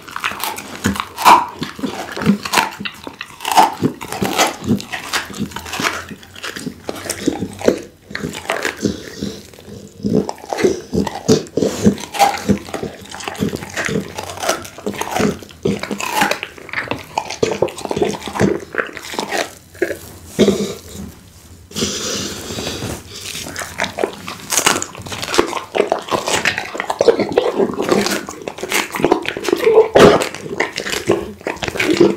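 Pit bull biting, tearing and chewing raw meat right at the microphone, with dense, irregular wet smacks and bites.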